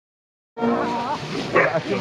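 A pack of foxhounds yelping and whining as they crowd in to feed. The sound cuts in suddenly about half a second in, after silence.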